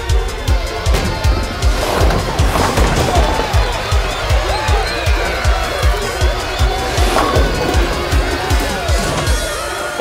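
Soundtrack music with a fast, steady beat.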